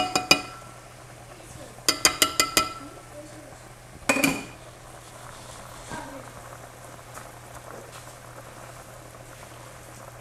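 A metal measuring cup tapped about six times in quick succession on the rim of a frying pan to knock out the last of the flour, each tap ringing briefly, with one more short knock a couple of seconds later. Under it and afterwards, a spatula stirs flour into melted butter over a quiet, steady sizzle and the bubbling of a pot at a rolling boil on the stove.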